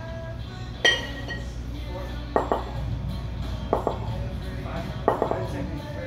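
Metal kettlebells clinking against each other as they are dropped from overhead and cleaned back to the rack during slow long cycle reps with 32 kg bells: four sharp ringing clinks about a second and a half apart.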